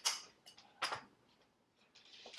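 Two brief sharp sounds about a second apart as a small glass salt container is handled after salting the fillets.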